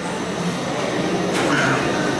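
Steady background hum of a restaurant dining room, with a brief sharp sound about one and a half seconds in.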